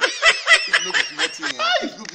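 A man laughing in a quick run of short, high-pitched bursts, several a second, rising in pitch near the end.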